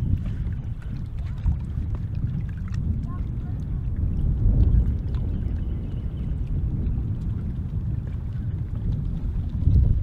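Wind buffeting an outdoor camera microphone: a steady, fluctuating low rumble.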